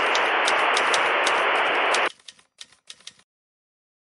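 Logo-animation sound effect: a steady static hiss with rapid typewriter-like clicks as the title types on. The hiss cuts off suddenly about halfway through, leaving a few scattered clicks before silence.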